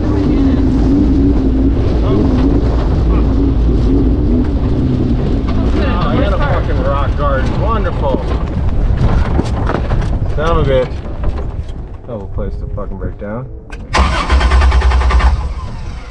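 Sandrail engine running as the car drives over a rough trail, then faltering and cutting out about two-thirds of the way through; the stalling comes from a fuel-delivery fault that the owner takes for a failing fuel pump. Near the end there is a loud burst of about a second, a restart attempt.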